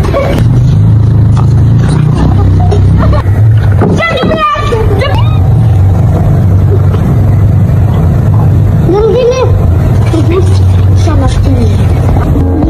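Children's voices without clear words, with a high, wavering cry or shout about four seconds in, over a steady loud low rumble.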